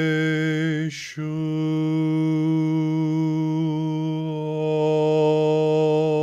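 A man's voice intoning the name Yeshua as a long, steady, single-pitch chant, cut briefly about a second in by a quick breath. The vowel colour changes partway through, and a slight waver comes in near the end.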